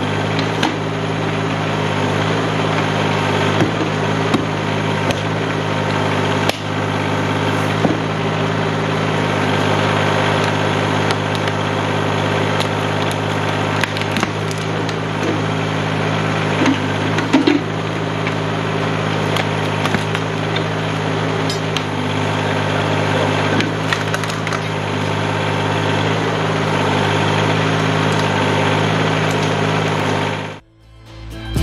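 Compact tractor engine running steadily, powering a backhoe that digs out a tree stump, with roots and wood cracking and snapping and the bucket knocking at irregular moments throughout.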